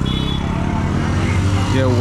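Motorcycle engines running close by, a steady low hum.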